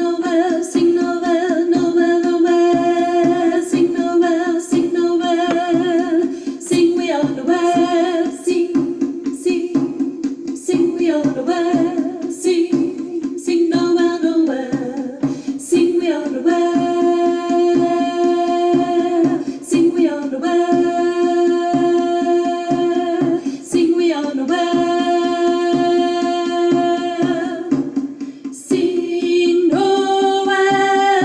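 A voice singing an alto choir part, with long held notes in a phrase that repeats, briefly breaking between phrases, over a steady low accompaniment.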